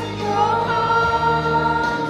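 Two women singing a gospel worship song into microphones, holding long notes, over a sustained low accompaniment that changes about halfway through.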